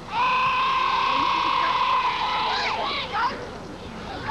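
A high-pitched voice holding one long shouted call for about two seconds, then a few shorter calls that rise and fall in pitch.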